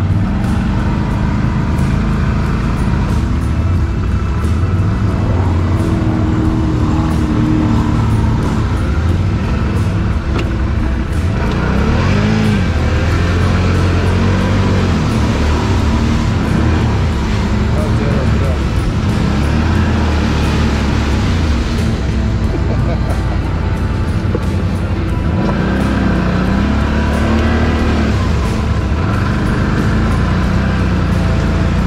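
Can-Am (BRP) ATV engine running under the rider as it drives through a muddy, water-filled track, its pitch rising and falling several times with the throttle.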